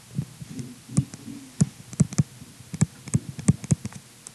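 A stylus tapping and knocking against a writing surface while a word is written and underlined, about a dozen irregular taps with dull low thuds.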